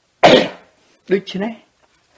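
A person clears the throat with one short, loud cough about a quarter second in, followed by a few spoken words.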